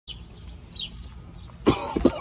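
A man coughs once, loudly and abruptly, near the end. Before it there is only a quiet background with a couple of faint high chirps.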